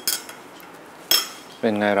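A metal teaspoon clinks against a ceramic coffee cup and saucer: once at the start and again about a second in, each with a brief high ring.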